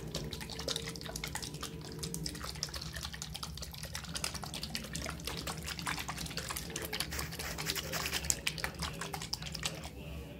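Water from a bathroom sink faucet trickling into the basin: a rapid, irregular patter of drops over a faint low steady hum.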